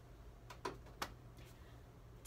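Quiet room tone with a steady low hum, and two faint short clicks about half a second apart near the middle.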